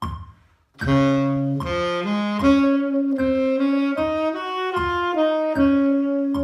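Tenor saxophone playing a slow line of held notes that step up and then back down, starting about a second in, over a steady percussive tick about every 0.8 seconds.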